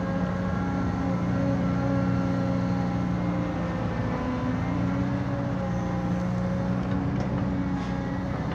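Caterpillar hydraulic excavator's diesel engine running steadily under hydraulic load as the boom lifts and the machine swings. The engine note dips slightly about halfway through and then picks up again.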